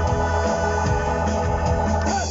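Live band music led by a held electric organ part over bass and drums, loud and steady.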